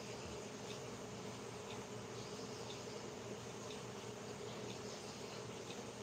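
A steady, faint buzzing hum, with faint short high chirps repeating about once a second.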